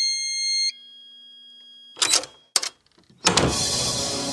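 Produced intro sound effects: a held electronic chime-like tone cuts off under a second in, leaving a faint hum. Two short noisy bursts follow around two and two-and-a-half seconds, then a louder burst about three seconds in as music begins.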